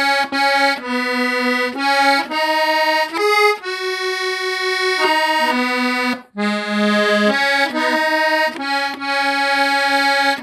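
Accordion played solo, a tune of reedy chords moving note to note with short breaks between phrases, a longer held chord about four seconds in and a brief stop just after six seconds.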